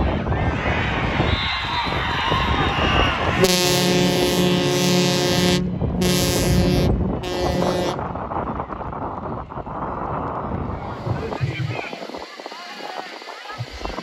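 Crowd cheering and shouting, then an air horn sounds three times: a long blast of about two seconds followed by two shorter ones. The crowd noise carries on a little quieter afterwards.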